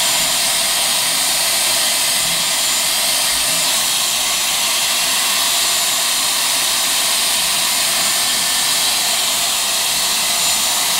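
Dyson Airwrap hair styler with its round brush attachment blowing hot air steadily. The airflow is an even, high-pitched rush that does not change.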